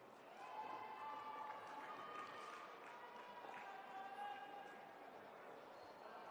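Faint, echoing voice over an arena public-address system, with drawn-out syllables that change pitch about once a second.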